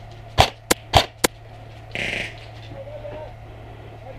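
Four sharp airsoft rifle shots in quick succession within about a second, then a short hiss about two seconds in.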